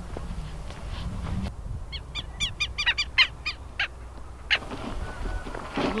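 A bird calling outdoors: about a second and a half in, a quick run of short pitched calls, about five a second, lasting some three seconds, over a low background rumble.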